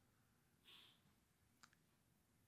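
Near silence: room tone, with a couple of very faint clicks.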